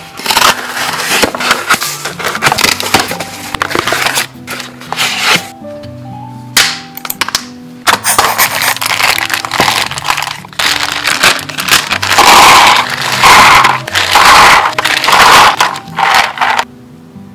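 Unboxing handling noise: a small cardboard box being opened, then a clear plastic tub of mechanical keyboard switches being opened and handled, in loud bursts of cracking and rustling with a short lull in between, over background music.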